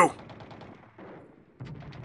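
Faint, rapid crackle of distant machine-gun fire, a battle sound effect, dipping briefly about a second and a half in.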